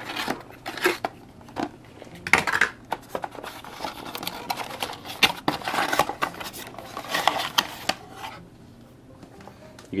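Cardboard phone box and plastic packaging being handled: rustling, scraping and light knocks, busiest in the middle and quieter near the end.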